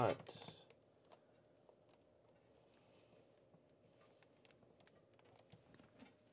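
Faint, scattered clicks of computer keys being typed, just after a voice trails off at the start.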